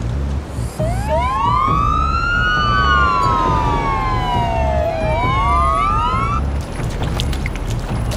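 Two emergency-vehicle sirens wailing together, slightly out of step: each rises, slides slowly down and rises again, then stops about six seconds in. A repeating low beat runs underneath, and a few sharp clicks follow near the end.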